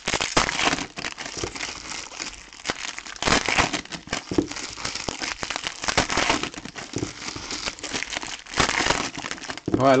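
Foil booster-pack wrappers crinkling and rustling in the hands as trading-card packs are handled and opened, an irregular run of crackles with louder flurries.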